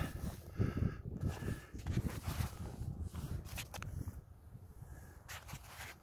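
Footsteps through dry prairie grass, a few short crisp rustles, over an uneven rumble of wind on the microphone; it gets quieter after about four seconds.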